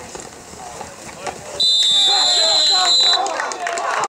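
A whistle blown in one long blast of about a second and a half, starting partway in, stopping the football play. Players' shouts run around it.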